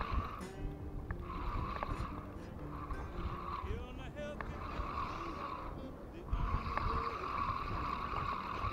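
Penn spinning reel whirring in repeated bursts of about a second each while a hooked fish is played on a bent rod.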